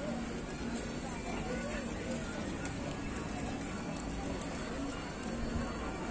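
Outdoor crowd chatter: many voices talking at once, none clearly, holding a steady level throughout.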